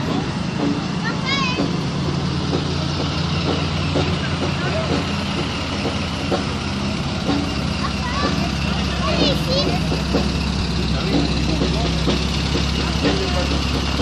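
Vintage cars, among them a Citroën Traction Avant, driving slowly past one after another, their engines running at a low, steady hum that grows louder in the second half, with people talking around them. A few short rising chirps sound near the start and about nine seconds in.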